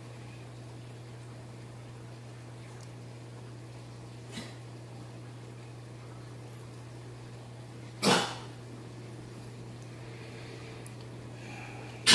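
A short, loud sneeze about eight seconds in, and a fainter puff about four seconds in, over a steady low hum.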